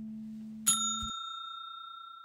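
A single bright bell-chime sound effect, the ding of a subscribe-button notification bell animation, strikes a little under a second in and rings on, fading slowly. Beneath it, a low held note from the outro music dies away and stops.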